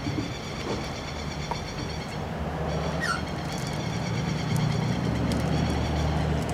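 A low steady rumble that grows louder in the second half, with faint steady high tones above it. About halfway through comes one short falling bird chirp.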